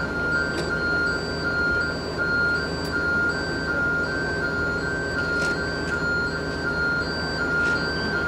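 Fire-service aerial ladder truck's warning beeper sounding steadily, about two beeps a second, over the low running of the truck's engine.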